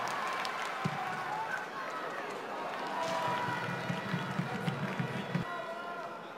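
Live pitch-side sound of a football match: players shouting and calling to one another, with a sharp thud of the ball being struck about a second in.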